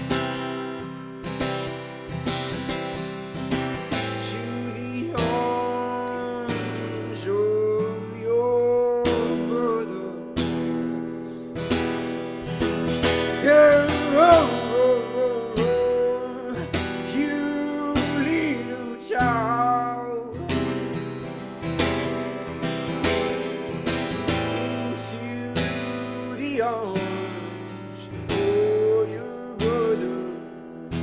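Acoustic guitar strummed in a steady rhythm, with a man singing a melody over it in phrases that come and go.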